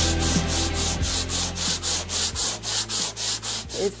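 Hand sanding along a painted shelf: quick, even back-and-forth rasping strokes, about five a second, as surface prep before painting.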